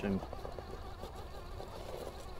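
Axial SCX-6 Honcho RC rock crawler's electric motor and geared drivetrain whirring steadily under load as its tires claw for traction on rock.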